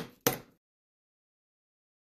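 A single sharp knock of a chisel being struck as it chops a mortise into a clamped piece of wood. About half a second in, the sound cuts off to complete silence.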